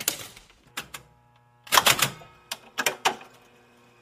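A series of sharp clacks and knocks at irregular spacing, loudest in two clusters about two and three seconds in. A faint steady hum sits under the second half.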